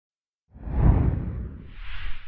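Whoosh sound effects of an animated logo intro: a deep, bass-heavy whoosh swelling in about half a second in and fading, then a second, higher whoosh near the end.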